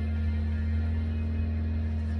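Background music with a sustained low tone and no clear beat.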